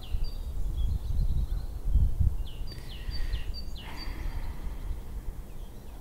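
Wind buffeting the microphone in gusts, strongest about two seconds in, with small birds calling in short, repeated high chirps.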